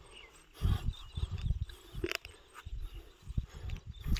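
A series of irregular low thuds and rumbles close to the microphone, the loudest about half a second in.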